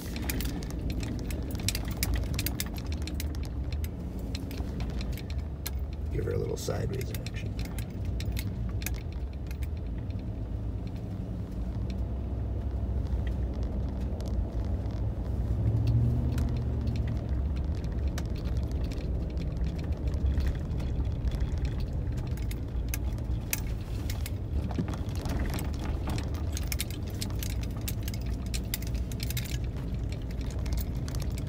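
A pickup truck driving on a snowy road, heard from inside the cab: steady low engine and road rumble with frequent small clicks and rattles.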